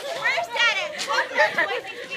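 Several people chattering and calling out over one another in fairly high-pitched voices, with a brief sharp click about halfway through.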